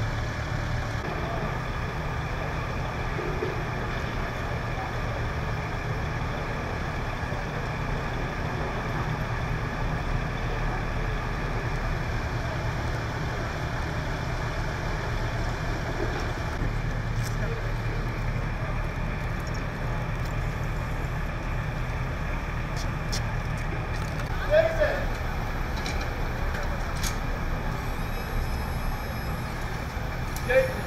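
Heavy vehicle engine idling with a steady low hum, with faint voices and a few short clicks and knocks in the second half.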